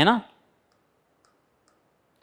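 A man's last spoken word, then near silence broken by a few faint, light ticks a little after a second in: a pen tapping the touchscreen board.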